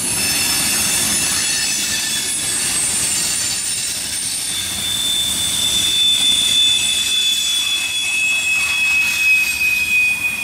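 Freight train's hopper cars rolling past, their steel wheels squealing in several high, steady tones over a low rumble. A strong new squeal tone comes in about halfway, and a lower one joins a couple of seconds later.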